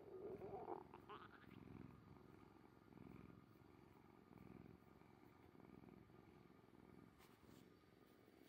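Orange tabby cat purring softly, a low rumble that swells and fades with each breath about every second and a half. In the first second a brief rising gurgle cuts across the purr.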